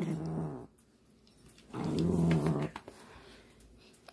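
Small dog growling low, in two bouts: a short one at the start and a longer one about two seconds in. It is a grumble of annoyance at being held and hugged.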